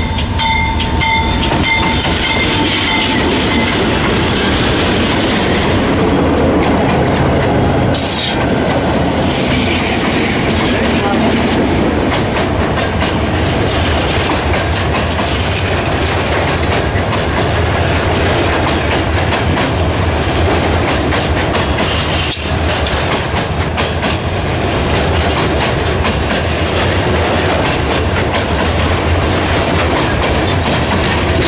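Diesel freight train passing close by: the locomotive goes by, then a long string of freight wagons rolls past with steady rumbling and clickety-clack of wheels over the rail joints. Steady high tones ring for the first few seconds.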